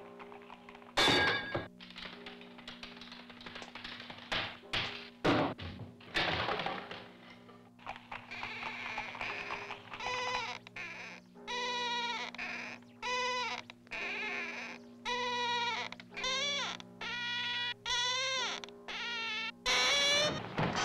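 Old film soundtrack over a steady low hum: a few sharp knocks in the first half, then from about halfway a run of short, wavering pitched notes, each under a second, rising and falling in pitch.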